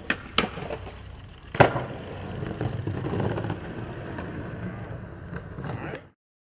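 Skateboard on concrete: a few sharp clacks, a hard impact about a second and a half in, then the wheels rolling steadily over the pavement.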